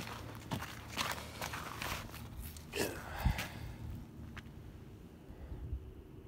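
Footsteps of a person walking on snow-dusted lake ice, the steps coming thickly at first and thinning out in the second half.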